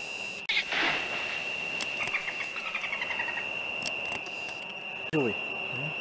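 A steady high-pitched tone runs throughout. A short rush of noise comes about half a second in, a quick series of short descending chirps follows around two to three seconds, and a man's voice is heard briefly near the end.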